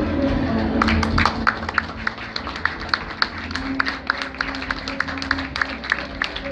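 A small audience clapping after a poetry reading, with irregular claps starting about a second in, over soft background music.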